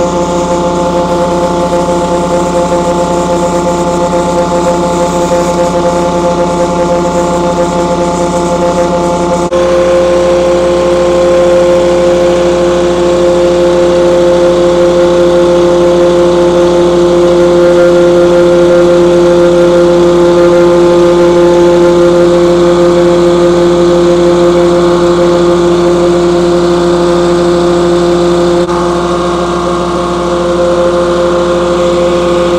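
Yanmar diesel engine driving a Mec 2000 vacuum pump, running steadily with a loud whine while the tank sucks up water. About ten seconds in the sound shifts and becomes a little louder.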